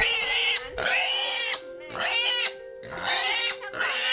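A small black Vietnamese lợn cắp nách ("armpit pig"), held upside down by its hind legs, lets out a string of long, high-pitched squeals, about four with short breaks between them.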